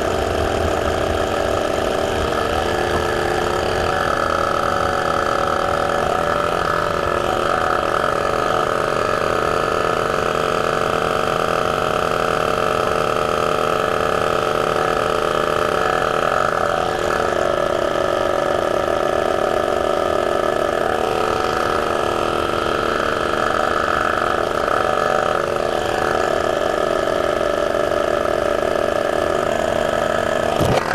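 Portable electric car tyre compressor running steadily, pumping air into a tyre: an even mechanical hum with a buzzing tone that holds at one level throughout.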